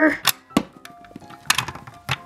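A few sharp plastic clicks and taps: a toy pet figure knocked against the buttons of a plastic toy vending machine playset, with faint background music under them.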